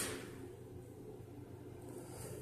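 A brief scuff at the very start, then a faint, steady low hum.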